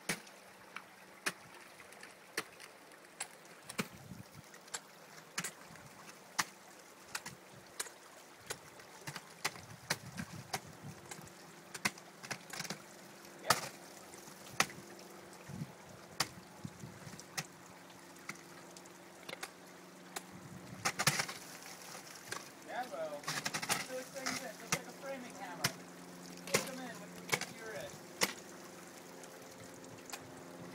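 Ice axes and crampon points striking into a glacier ice wall as a climber works up the face: sharp, irregular chops about once or twice a second.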